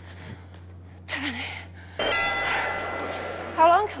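A bell-like chime rings out about halfway through, several steady tones held for over a second and slowly fading: a timer signal marking the end of a workout round. Before it comes a short breathy exhalation.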